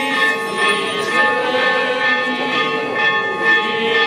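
Church bells pealing: many overlapping ringing tones, struck again and again so that the ringing never dies away.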